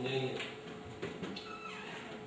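A man's voice speaking over a public-address microphone in a hall, breaking off about half a second in, followed by a pause with only faint, indistinct sounds.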